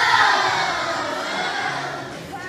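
A group of children shouting together all at once, loudest at the start and fading over about two seconds.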